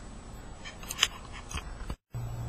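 A few small, sharp clicks and light handling noise over a low background hiss, with the sound cutting out abruptly at the very end.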